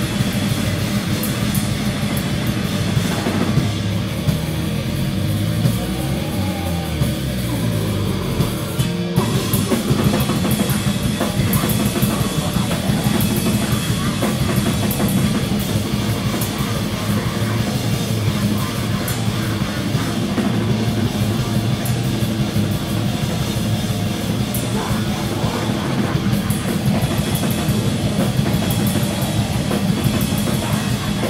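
A grindcore band playing live at high volume: heavily distorted electric guitar and bass, pounding drum kit. About four seconds in the playing thins to sweeping, gliding noise, and the full band crashes back in hard about nine seconds in.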